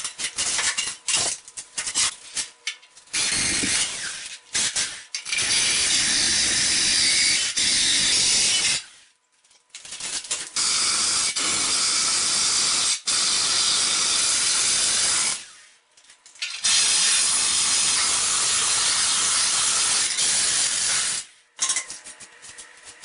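Cordless drill boring a round hole through a ceramic wall tile, a loud steady grinding in three long runs of several seconds each with short pauses between. It is preceded by a few clicks and knocks of tiles being handled.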